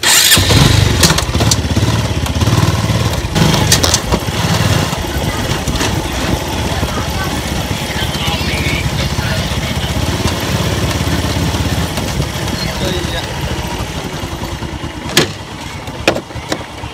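A vehicle engine running with a steady low drone. It starts abruptly and loud, with scattered knocks and rattles over it.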